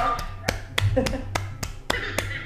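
A quick run of sharp finger snaps, about five a second and slightly uneven, given as applause just after a song ends.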